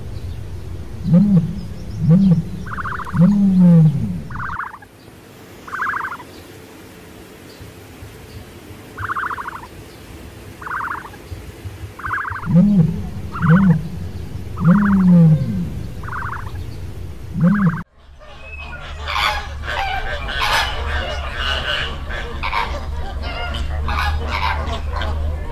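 An emu calling: repeated low, arching grunts with short, rattling higher-pitched pulses between them. About three-quarters of the way in, the sound cuts to a flock of flamingos honking together in a dense, overlapping chorus.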